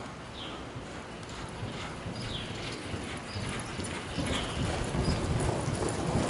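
Hoofbeats of a Quarter Horse gelding loping on soft arena dirt, growing louder in the second half as the horse speeds up. Short high chirps recur about once a second over the hoofbeats.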